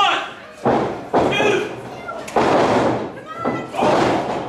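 A pro-wrestling bout in the ring: about four sharp slaps and thuds of strikes and bodies hitting, ringing in a large hall, with shouting voices between them.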